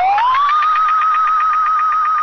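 A single loud tone that glides up in pitch at the start, then holds with a fast, even warble of about ten wobbles a second, like a siren.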